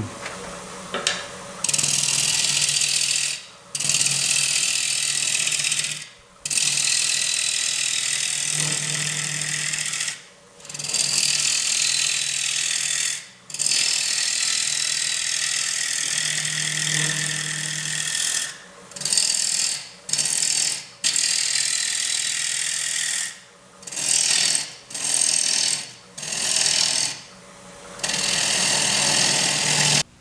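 Bowl gouge cutting a spinning basswood bowl blank on a wood lathe at 1400 RPM: a steady hiss of shavings in long passes, broken about a dozen times by short gaps where the tool comes off the wood, the gaps more frequent in the second half. The lathe's motor hums low underneath.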